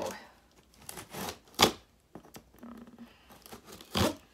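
Packing tape and cardboard of a shipping box being slit and torn open: a few short tearing rasps, the loudest and sharpest about a second and a half in.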